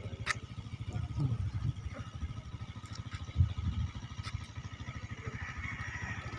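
Low, steady engine rumble from a nearby motor vehicle, with a sharp click about a third of a second in.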